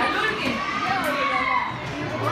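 Young children's voices chattering over one another.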